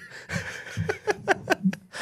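Men laughing quietly and breathlessly, mostly in a run of short, quick breathy bursts in the second half.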